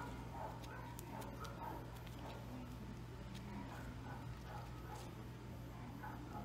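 Faint rustling and light clicks of grosgrain ribbon and thread being handled as the thread is pulled to gather the ribbon, over a steady low hum.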